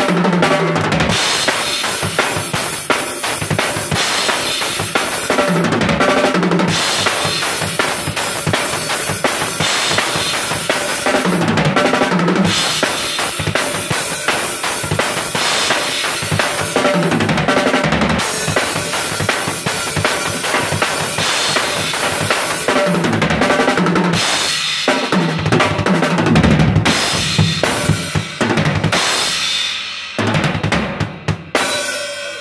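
Acoustic drum kit playing a beat on bass drum, snare and cymbals, broken about every six seconds by a short sixteenth-note fill moving across the tom-toms.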